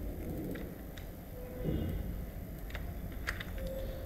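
A few separate computer mouse and keyboard clicks, spaced out one at a time, over a steady low hum of background noise.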